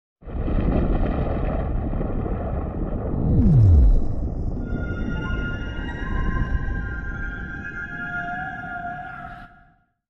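Logo ident music for a production company: a deep rumble, a falling swoosh down to a low boom about three and a half seconds in, then several held tones that fade out near the end.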